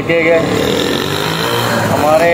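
A man's voice talking over the steady background noise of a busy street with passing motor traffic.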